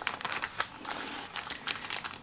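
Plastic-wrapped bamboo sushi mat crinkling and clicking under the hands as it is rolled and pressed around a sushi roll: soft, irregular crackles.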